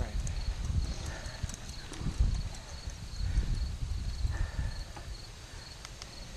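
Wind buffeting the microphone of a camera on a moving bicycle, a gusty low rumble that swells and fades. Behind it, a faint high insect trill from the roadside fields pulses about four times a second.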